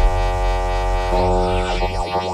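Electronic film score: a sustained, buzzy drone tone over a deep low hum, joined near the end by sweeping tones that rise and fall.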